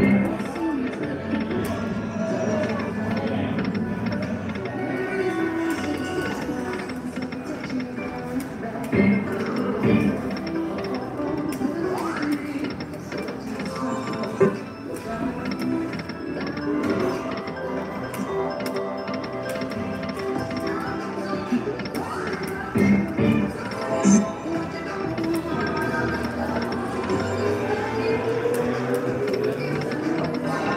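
Aristocrat Buffalo video slot machine playing its electronic spin music and reel-stop sounds over the din of a casino floor, spin after spin, with a few short, sharper hits. The spins are a losing run with no win.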